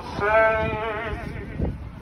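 Male lead vocal holding one long sung note with vibrato over the song's backing track. The note fades a little past a second in.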